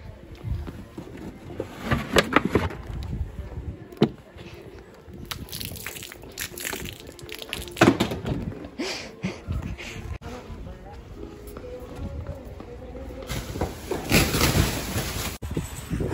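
Handling noise from a phone carried in the hand while walking quickly: rubbing and scattered knocks, with muffled voices and background music.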